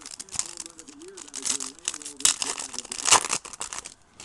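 Foil wrapper of a trading-card pack crinkling and tearing as it is handled and ripped open, a run of sharp crackles that is loudest around two and three seconds in.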